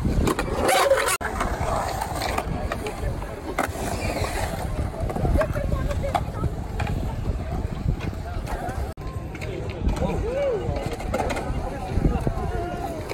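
Skateboard wheels rolling on a concrete bowl, a steady low rumble broken by a few sharp clacks of the board. Voices of a crowd of onlookers chatter in the background.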